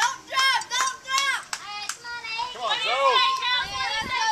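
Young girls' high-pitched voices shouting and chanting cheers, with a few sharp claps in the first two seconds.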